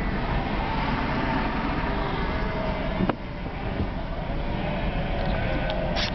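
Car engine running with a flock of sheep bleating around the car, heard from inside the cabin; a sharp click about three seconds in.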